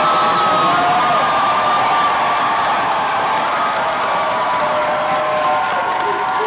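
Crowd of guests cheering and clapping, with long held shouts rising above the noise.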